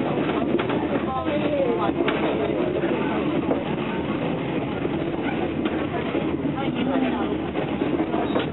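Steady running noise of a passenger train heard from inside the coach while it moves, with passengers talking indistinctly in the background.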